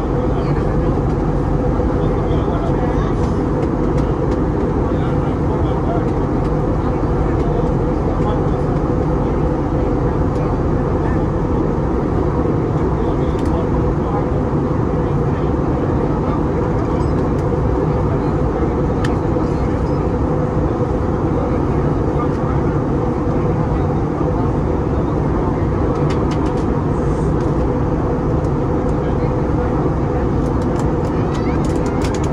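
Steady cabin noise of an Airbus A320neo airliner in flight, heard from a window seat near the engine: an even drone of engine and airflow with a steady hum.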